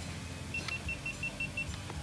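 A mobile phone's alarm beeping: a quick run of about eight short, high beeps on one pitch, starting about half a second in and lasting just over a second.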